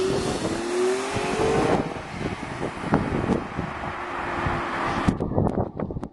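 Motor traffic passing close by on a busy main road: car engines and tyre noise, heaviest in the first two seconds with one engine note rising slightly, then a steadier rush of road noise.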